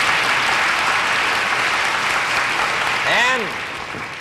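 Studio audience applauding, fading away in the last second, with a short vocal sound about three seconds in.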